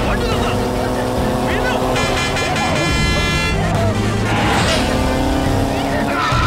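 Motorcycle and SUV engines in a film chase sound mix, with a bright, held, horn-like tone for about a second and a half starting about two seconds in.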